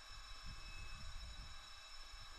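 Faint room tone: a steady low hiss with a thin high whine from the recording chain, and no distinct event.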